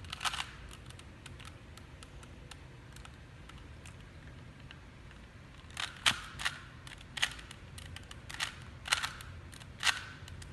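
A plastic 3x3 Rubik's cube being twisted by hand: quick clicks and clacks as its layers turn. A short cluster of clicks comes at the start and faint scattered ticks follow. A run of louder twists comes over the last four seconds.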